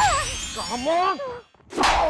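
Magical sparkle sound effect: a shimmering, ringing chime that fades over about a second, over a voice calling out with rising and falling pitch. A short, loud noisy burst comes near the end.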